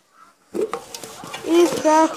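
Near silence for about half a second, then handling noise, rustling and light knocks, as a red cup is held and moved, with a voice starting near the end.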